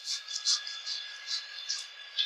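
Fingers scrubbing and lathering shampoo through wet hair during a salon hair wash: a soft, crackly rustle in short irregular strokes, the loudest about half a second in, over a faint steady high whine.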